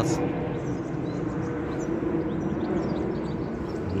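Steady vehicle rumble with a faint, even hum underneath.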